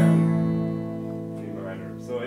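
Steel-string acoustic guitar: an E major chord strummed once, left to ring and slowly fade.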